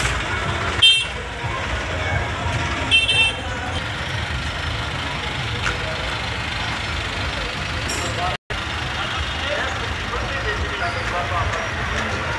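Slow-moving tractor engines running in a crowded street, with two short vehicle horn toots, about one second in and about three seconds in, over people's chatter.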